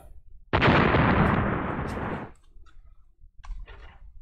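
An explosion "boom" sound effect played to celebrate a big card pull: a sudden blast about half a second in that fades away over roughly two seconds.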